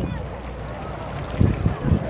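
Wind rumbling on the microphone, with a few stronger gusts in the second half, over faint voices of people on a beach.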